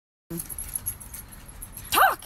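Faint clicking and handling noise over a thin high hiss, then near the end a short, high voice-like squeal that falls in pitch.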